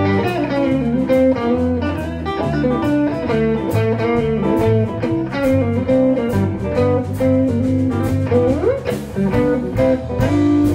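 A live blues band playing an instrumental passage: electric guitars over bass guitar and a drum kit keeping a steady beat, with a lead guitar note gliding upward near the end.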